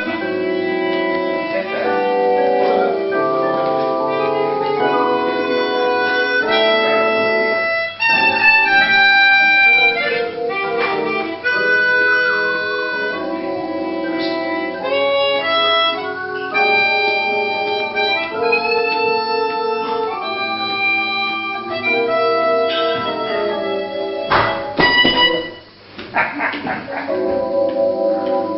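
Chromatic harmonica playing a jazz melody of held notes over chords from a keyboard, with a short break near the end.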